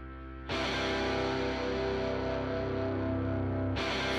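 Rock music: a quiet sustained sound gives way about half a second in to loud distorted electric guitar, and near the end the music grows fuller and brighter as more of the band comes in.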